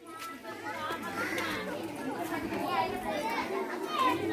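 Background chatter of a crowd of women and children: many voices talking and calling at once, overlapping at an even level with no single voice standing out.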